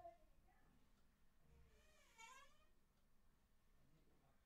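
Near silence, with one faint, brief pitched call about halfway through that dips and then rises in pitch.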